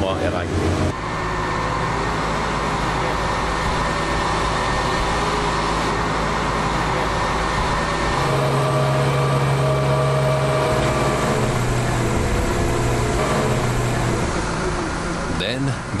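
Heavy machinery on an offshore pile-driving pontoon running steadily with a low drone, its pitch dropping and shifting a little about halfway through.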